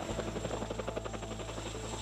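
CH-47 Chinook tandem-rotor helicopter flying low: a steady drone of rotors and engines with a rapid, even beat of blade chop.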